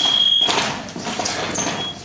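Electric fencing scoring box sounding a steady, high-pitched beep signalling a scored touch, cutting off suddenly about half a second in.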